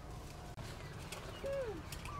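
A baby macaque gives a single soft cry about one and a half seconds in, a short call falling in pitch.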